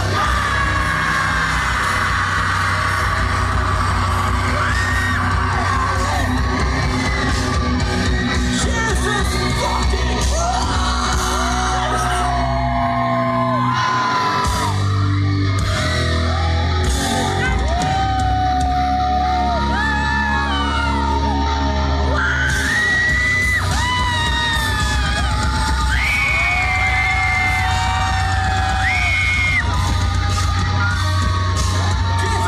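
Live rock band playing loud, with a heavy bass and drum low end under sung and shouted lead vocals. The band drops out for a moment about halfway through, then comes back in.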